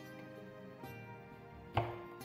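Gentle background music, with a single knife chop through a broccoli stem onto a wooden cutting board near the end, the loudest sound here.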